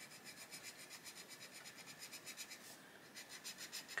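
Faint scratch of an Arteza Expert coloured pencil's lead rubbing on paper in quick, even back-and-forth shading strokes, about five or six a second.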